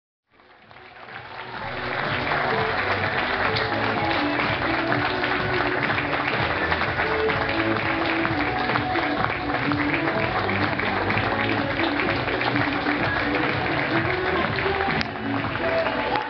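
An audience clapping steadily over music. It fades in over the first two seconds.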